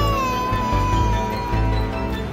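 A baby girl of about one year crying: one long high wail that sinks slightly in pitch and trails off just before the end. Background music plays underneath.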